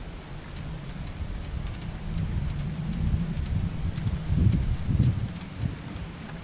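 Wind buffeting the microphone, a low rumble that grows through the second half and swells twice near the end.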